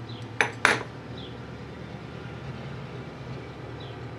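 Two sharp metallic clinks about a third of a second apart, near the start, as steel open-end wrenches and a small nut knock together in the hands. A few faint light ticks follow over a steady low hum.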